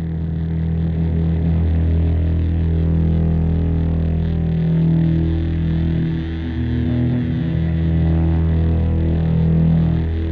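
Instrumental music: a sustained low drone of held notes, with fainter shifting tones above it.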